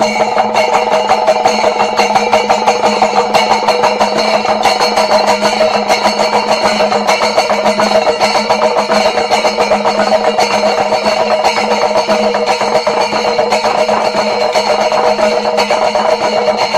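Chenda melam: a massed ensemble of chenda drums beaten rapidly with sticks, with ilathalam brass hand cymbals clashing in time and ringing on. Loud and continuous, a dense stream of strokes.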